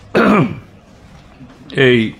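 A man clears his throat once into close microphones, a short rough sound falling in pitch. He speaks a brief word near the end.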